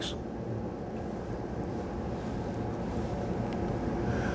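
Steady low hum of room noise, such as ventilation, with no change through the pause.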